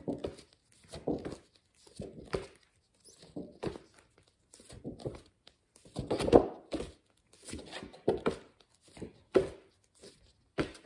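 A woman saying single phonics letter sounds in quick succession, about one a second, each a short separate burst, as she calls out the sound of each flashcard letter at speed; the loudest comes about six seconds in.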